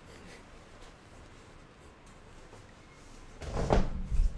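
Quiet room noise, then a muffled thump with a deep rumble near the end, like something knocking or being moved against furniture close to the microphone.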